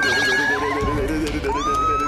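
A high-pitched squeal that rises and then holds, heard twice, the second starting about a second and a half in, over steady background music.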